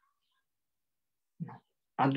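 Mostly near silence, broken about one and a half seconds in by one short vocal sound from a man's voice.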